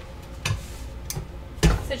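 A few light clicks and a louder knock from handling a heat press while a fabric garden flag is laid on it, the knock about one and a half seconds in.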